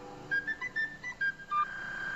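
Glitched cartoon soundtrack: a quick run of short, high electronic beeps stepping up and down in pitch, then a single steady high tone that starts near the end and holds.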